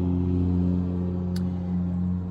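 Steady low hum of a car running while parked, heard from inside the cabin, with one short click a little under one and a half seconds in.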